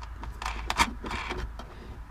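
Small clicks and scraping of a 10 mm nut being threaded by hand onto a taillight mounting stud. The sharpest click comes just under a second in.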